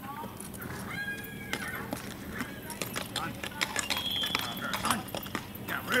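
Hoofbeats of a sorrel Tennessee Walking Horse stallion clip-clopping on a paved road as it moves off under a rider: a quick, irregular string of sharp hoof strikes.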